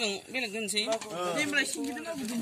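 A person talking, the voice rising and falling in short phrases.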